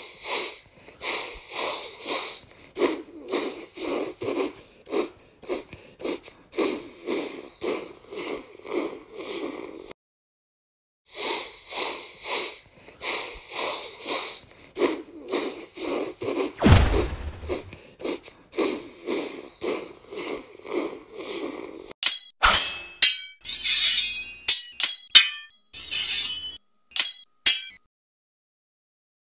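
Battle sound effects: a rhythmic tramp of marching feet, about one and a half steps a second, that breaks off for a second around ten seconds in and then resumes. A single deep thud comes a little past the middle, and near the end there is a rapid run of sharp metallic clashes like swords striking.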